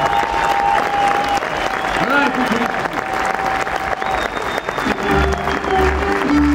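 Audience applauding, with scattered held notes and voices over it. About five seconds in, a folk string band with fiddle and double bass starts playing, its bass notes coming in strongly.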